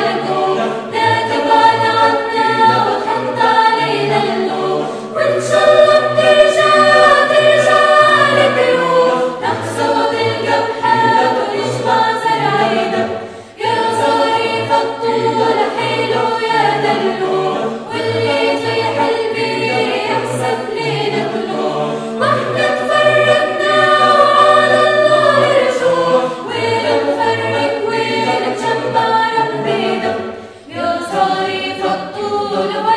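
Mixed choir of men's and women's voices singing a cappella in sustained harmony, pausing briefly for breath about thirteen seconds in.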